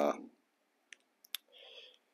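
A few faint, sharp clicks about a second in, then a short soft breathy sound near the end.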